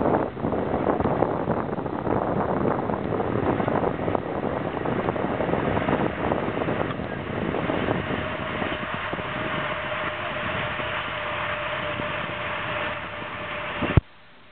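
Wind buffeting the microphone: a loud, steady rushing noise. A faint steady hum joins about eight seconds in.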